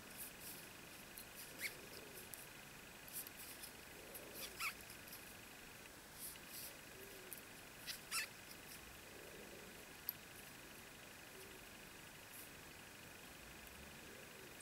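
Faint soft clicks and rustles of a crochet hook and yarn worked by hand, making single crochet stitches around a chain ring, a few separate ticks scattered through, over a steady faint high whine.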